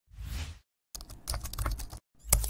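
Computer keyboard typing, a dense run of quick keystroke clicks starting about a second in, preceded by a brief rush of noise in the first half second.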